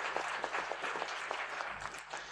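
Audience applauding with many overlapping claps, thinning out slightly near the end.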